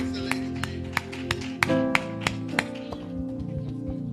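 A church band's keyboard and bass holding soft sustained chords, with hand claps about three a second that thin out after two or three seconds.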